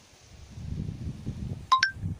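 Wind buffeting the microphone among tall riverside reeds, a low uneven rumble. Near the end come two short, sharp high notes, each sweeping quickly upward.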